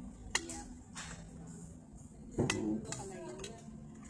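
Cutlery clinking against plates and dishes, with two sharper clinks, one just after the start and a louder one just past halfway, and a few lighter taps between, under low voices.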